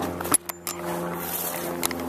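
Handling noise from a camera jostled in a pocket during a rock scramble: cloth rubbing and scraping, with a few sharp knocks and a sudden brief muffling about half a second in.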